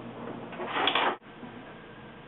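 A thin sheet-metal blank sliding and scraping across a bandsaw table: one brief rustling scrape of about half a second that cuts off suddenly just past the middle, followed by faint room noise.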